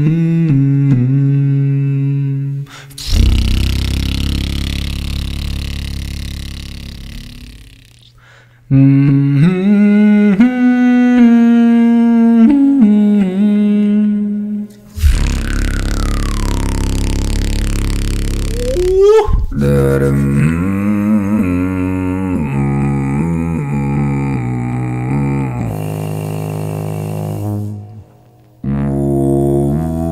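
Solo beatboxer's vocal performance: hummed melodic notes layered over a low drone, alternating with long, deep bass passages. The sound drops out briefly about eight seconds in and again near the end.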